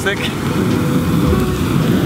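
Hairspray aerosol lit into an improvised torch: a steady rushing jet of flame playing over a raw turkey.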